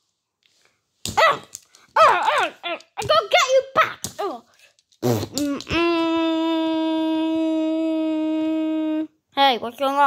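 A voice making wordless sounds: a string of short cries that swoop up and down in pitch, then one long held note of about three seconds that cuts off near the end.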